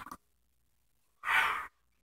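A euphonium player's quick breath through the mouth, about half a second long, drawn in a rest between phrases just before playing resumes.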